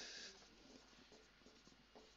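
Whiteboard marker writing on a whiteboard, faint: a short squeaky stroke at the start, then soft scratching strokes.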